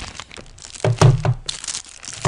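Plastic packaging being handled, crinkling and rustling, with several knocks; the loudest is a thump about a second in.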